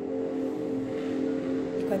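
Soft ambient meditation music of sustained, steady held tones, with a woman's voice starting again near the end.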